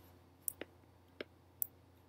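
Computer mouse button clicking: about four short, sharp, separate clicks, faint against a low steady hum.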